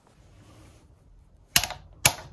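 A hammer tapping a tight-fitting crow's foot wrench onto a valve adjuster: one sharp metal tap about one and a half seconds in, with a second at the very end. This seats the wrench on an adjuster whose edges are rounded out.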